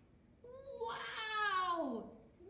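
A woman's long, drawn-out vocal exclamation, starting about half a second in and sliding steadily down in pitch, in a storyteller's expressive reading voice.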